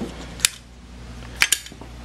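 Three short sharp clicks, one about half a second in and two close together near the end, over a low steady hum.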